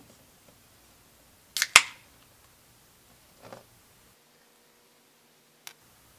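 Aluminium beer can opened by its pull tab: a sharp double crack with a short hiss of escaping gas about a second and a half in. The sound cuts to dead silence about four seconds in, with a small click just before the end.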